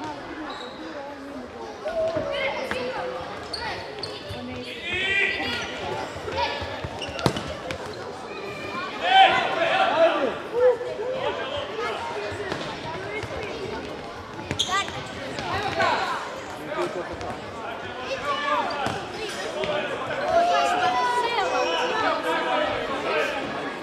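Players and spectators shouting and calling out, echoing in a sports hall, with a few sharp thuds of the ball being kicked and bouncing on the wooden floor.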